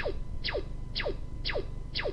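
Slide-animation sound effect: a short zip falling in pitch, repeated about twice a second as line after line flies onto the slide.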